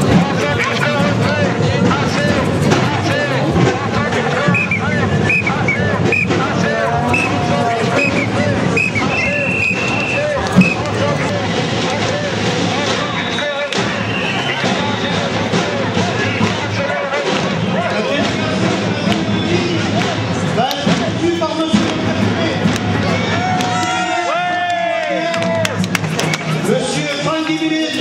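Voices of a street demonstration crowd mixed with music, dense and continuous; a long held note stands out near the end.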